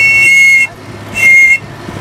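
Safety whistle on a life jacket blown in two blasts: one of about two-thirds of a second at the start, then a shorter one about a second in. Each blast is a steady high tone with two pitches sounding together.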